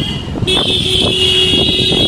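Motorcycle riding through busy street traffic: steady engine and road noise, with a steady high-pitched whine and a steadier lower tone that come in about half a second in.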